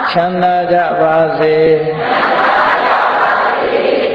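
Buddhist Pali chanting in call and response. A single male voice chants a phrase on a few held, stepping notes for about two seconds, then a group of voices chants the reply together.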